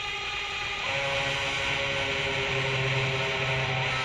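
Opening of a hard rock track, still swelling: a dense, hissy wash with held tones, separate notes entering about a second in and a low sustained note from about halfway.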